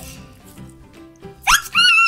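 Background music, then about one and a half seconds in a loud, high-pitched whining call whose pitch rises and falls in short arcs.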